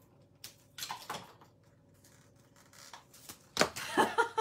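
Plastic ribbon packaging being worked open by hand: a few short crinkles and clicks, then a sudden loud sound near the end as it comes free.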